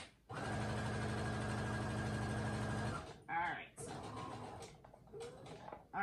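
Brother computerized sewing machine stitching a seam at a steady speed for about two and a half seconds, then stopping suddenly.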